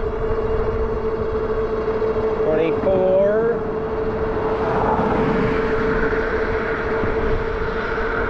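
Electric bike's 750 W rear hub motor giving a steady whine under full throttle, loaded on a hill climb as its speed sags to about 24 mph. Wind rushes over the microphone, swelling for a couple of seconds midway.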